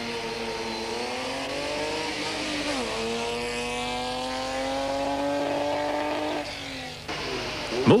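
Off-road racing vehicle's engine pulling under acceleration. Its pitch drops sharply at a gear change about three seconds in, then climbs steadily before dying away near the end.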